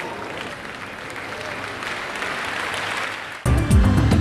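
Crowd applause swelling steadily. About three and a half seconds in, it is cut off by a sudden burst of loud music with deep bass, a station ident's theme.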